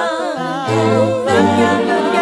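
Wordless a cappella vocal harmony from a hip-hop/R&B mashup: several voices sing and hum held chords over low held bass notes, with no drums.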